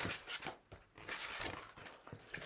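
Paper pages of a hardback picture book being turned by hand, with a soft rustle and brush of paper.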